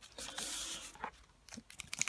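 Faint rustle of a trading card pack's wrapper as the pack is slid off a stack and handled, then a few small crinkles near the end as the wrapper starts to be torn open.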